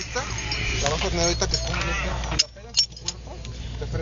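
Voices talking in the background, with two sharp knocks a little past halfway, after which it goes quieter.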